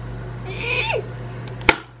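A woman's short, high-pitched excited squeal that drops in pitch at its end, followed about a second later by a single sharp click.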